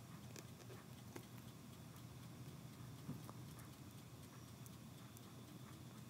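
Faint, scattered small clicks of a craft knife blade cutting through the edge of a rubber eraser-stamp block, over a low steady background hum.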